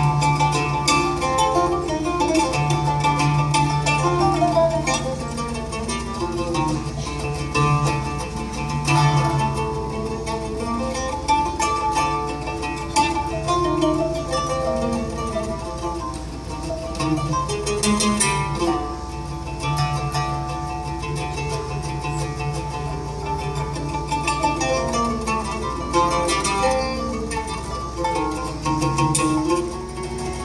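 Oud and pipa playing a live duet: plucked-string melody in quick runs of notes over a recurring low note.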